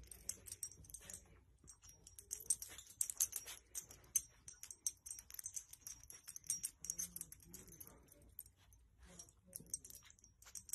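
Faint rustling and crinkling of a blanket as a dog nudges and tucks it with its nose, a dense run of quick scratchy clicks that comes and goes.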